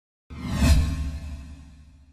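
An edited-in whoosh sound effect with a deep low boom under it. It starts suddenly, peaks about half a second later, then fades away over the next second and a half.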